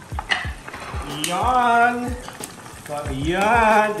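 Food deep-frying in a pot of hot oil, a steady sizzle, with a few light utensil clicks. A man's voice sounds a drawn-out, wavering note about a second in and another near the end.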